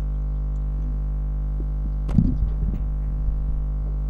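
Steady electrical mains hum with a buzzing row of overtones. About two seconds in there are handling thumps and knocks from a table microphone being gripped and moved, lasting a second or so.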